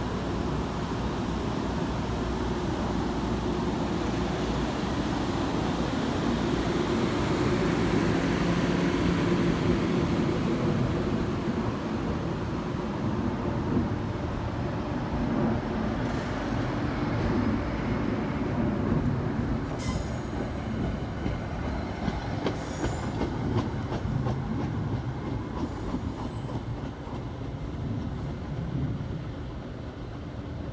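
NJ Transit Comet passenger coaches rolling past as the train pulls out of the station, with a steady rumble of wheels on rail. In the second half the wheels click over rail joints and give brief high squeals, and the sound fades near the end as the last car moves away.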